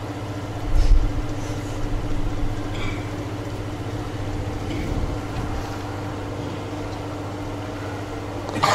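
A steady low mechanical or electrical hum, with a soft low thump about a second in and a few faint clicks.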